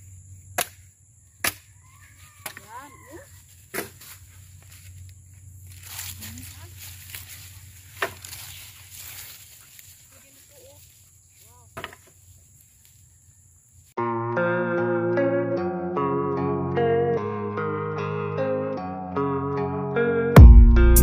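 Dry branches knocking and snapping a few times as they are dragged and gathered, over a steady high-pitched drone. About two-thirds of the way through, background music takes over and is the loudest sound.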